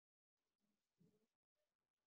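Near silence: the presenter's audio stream on a web-conference call has dropped out.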